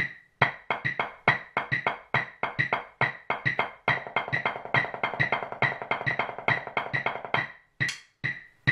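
Drumsticks striking a practice pad against a steady metronome click about two and a half times a second: sparser strokes at first, then from about halfway a dense run of ninelets, nine even notes across two beats, which stops shortly before the end while the clicks go on.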